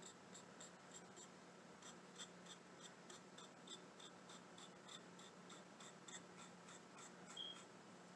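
Faint, quick taps of a small paintbrush dabbing paint along the edge of a cutout, about three to four a second, over a faint steady low hum.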